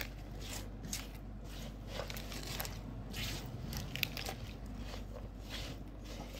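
Raw sliced bell peppers, onion and garlic being tossed together by hand in a pan: irregular crisp rustles and soft crunches of the vegetable pieces.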